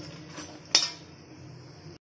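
A perforated metal spatula strikes the side of an aluminium kadhai once, with a sharp clink about three-quarters of a second in. It sounds over the steady low hiss of dahi vada frying in oil.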